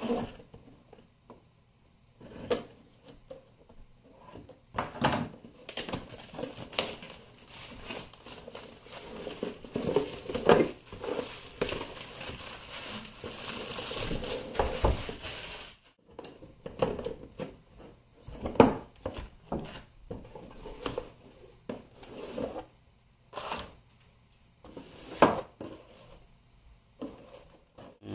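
Plastic shrink wrap being slit, torn and crinkled off a cardboard box, with irregular taps and scrapes as the box is handled. The crinkling is densest in the first half.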